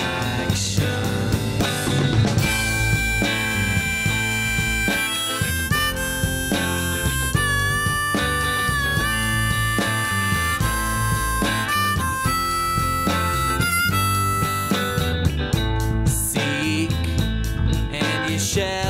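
Live rock band playing an instrumental break: drums and guitars under a lead line of long held notes that bend and step between pitches.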